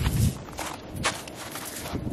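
Old, crusty snow crunching in several short bursts as it is scooped up and stepped on.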